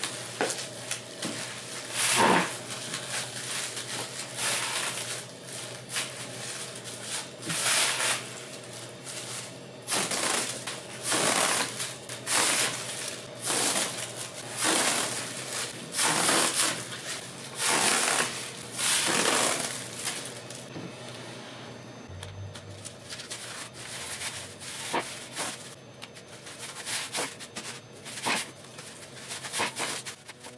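Crinkled kraft paper packing filler rustling and crunching as gloved hands grab and squeeze it, in a run of short bursts about once a second, giving way to lighter rustles and clicks for the last ten seconds or so.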